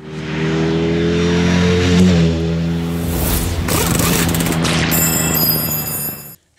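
Produced transition sound effect: an engine revving with rising pitch, peaking about two seconds in, followed by a loud whooshing sweep and high ringing tones near the end, set with music.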